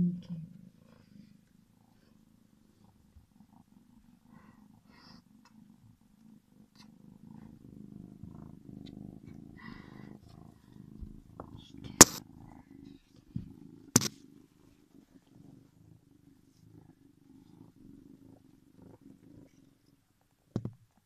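A gray tabby kitten purring steadily at close range. Two sharp knocks cut through, about twelve and fourteen seconds in.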